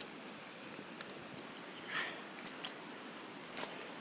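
Steady rush of a shallow river running over rocks, with a few faint crunches of footsteps on river gravel.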